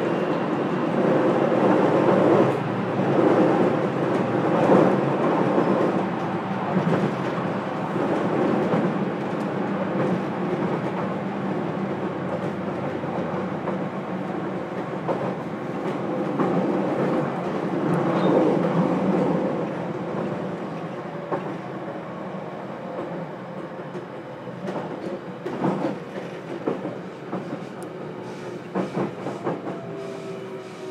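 JR Kyushu 813 series electric train running, heard inside the motor car KuMoHa 813-204: a steady rumble of wheels on rail. It grows quieter over the second half, with a cluster of clicks near the end.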